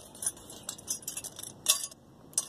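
Pieces of scrap copper pipe clinking together as they are handled: a run of light metallic clicks, the loudest cluster near the end.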